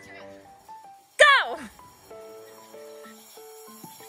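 Background music with held notes, broken by one loud shouted "Go!" a little over a second in.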